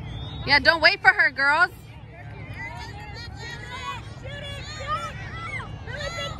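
A high-pitched voice shouting loudly for about a second near the start, then quieter scattered chatter and calls of players and spectators over a low background rumble.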